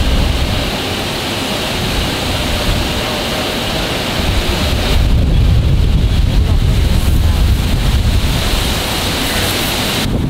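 Strong wind buffeting the microphone: a steady rushing noise with a low rumble that grows heavier about halfway through as a gust comes in.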